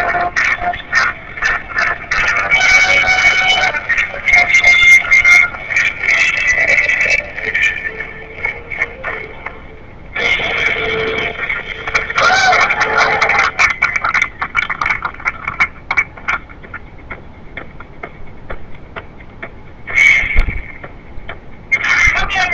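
Event audio of voices and music played back through a handheld media player's small speaker, muffled and tinny with many clicks. It gets quieter for several seconds past the middle.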